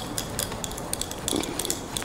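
Chef's knife cutting into a firm, half-ripe Tommy mango on a cutting board: a run of small, crisp clicks and scrapes as the blade works through the skin and flesh. The cook puts the hard going down to the knife not being a good one.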